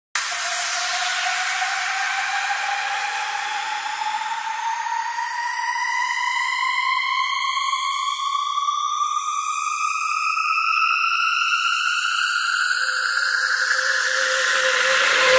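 Electronic synthesizer riser opening a DJ remix: a single tone with overtones that rises slowly and steadily in pitch, and a second, lower steady tone joins near the end.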